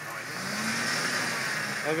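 Jeep Wrangler's engine running steadily at low speed as the Jeep crawls over a rock obstacle.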